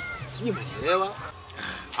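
A man's voice speaking in short, rising and falling exclamations, with an abrupt edit in the sound about a second and a half in.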